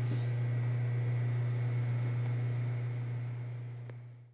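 A steady low hum with a faint hiss over it, fading out near the end.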